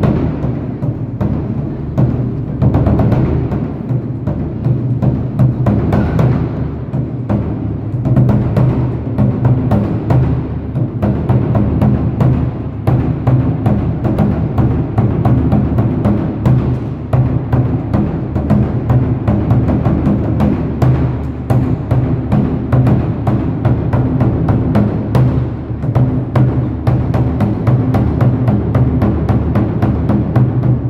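Chinese war-drum ensemble playing: several large barrel drums and a big overhead drum beaten together in fast, dense, continuous strokes with a deep boom.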